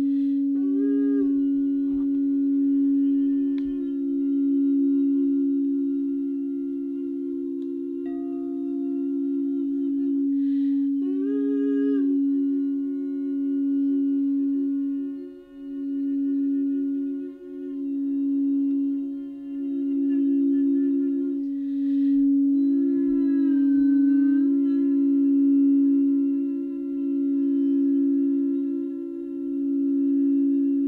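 Frosted quartz crystal singing bowls ringing in one long, steady note with a slow wavering pulse, sustained by a mallet rubbed around a bowl's rim. A voice hums long held notes along with them, sliding to a new pitch a few times.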